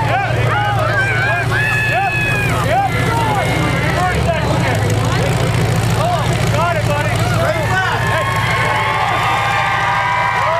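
Demolition-derby truck engines running steadily under a crowd's shouting and chatter.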